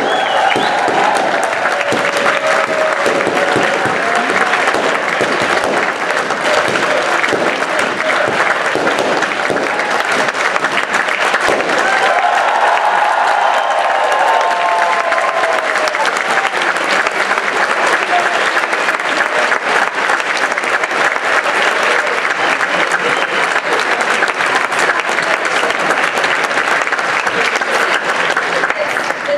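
Live studio audience applauding steadily, with cheering voices over the clapping.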